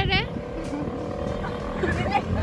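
Riding on a motor scooter: a steady low engine and road rumble, with wind on the microphone and a faint steady whine.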